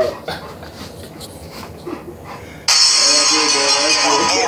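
A dog whines briefly at the very start, then there is a stretch of quieter room sound with a few small knocks. About two-thirds of the way in, loud music with a vocal line starts abruptly.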